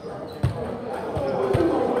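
A ball bouncing on a gym floor: three short thumps, unevenly spaced, with chatter in the hall behind them.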